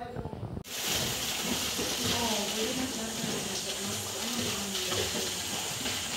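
Water splashing steadily as swimmers kick across a swimming pool, a continuous hiss that starts abruptly under a second in.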